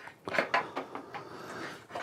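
A few light clicks and knocks of plastic MC4 solar cable connectors and leads being handled and pushed together.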